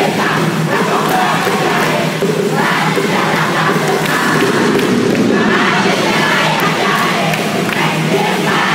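Music played over a sound system while a group of people shout and chant along, with thuds mixed in.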